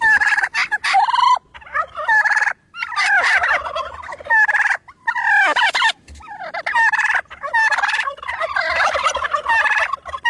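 Plush turkey toy's built-in sound box playing turkey gobbling, in a run of warbling bursts with short breaks between them.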